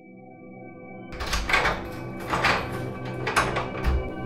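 Music fades in. Then a door is banged on three times, about a second apart, with a heavier low thump near the end.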